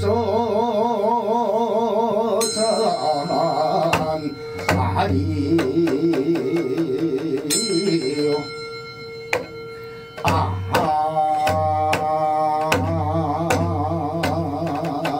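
Korean western-provinces folk song (seodo sori): a male singer holds long notes with a strong wavering vibrato, accompanied by janggu hourglass-drum strokes and small brass bowls struck with sticks, their strokes ringing on. The music drops quieter for about two seconds past the middle, then picks up again.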